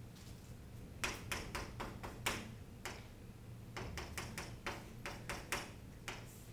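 Chalk tapping on a chalkboard while writing: short, sharp taps in quick runs, one cluster about a second in and a second, denser one from about four seconds.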